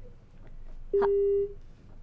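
A single telephone busy or disconnect tone is heard over the phone-in line: a click, then one steady beep lasting about half a second, about a second in. It is the sign that the caller's line has dropped.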